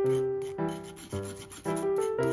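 A metal spoon rubbing flour through a fine wire-mesh sieve, a scratchy rasp, over background piano music with a new note about every half second.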